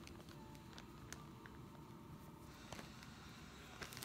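Near silence: room tone with a few faint light ticks.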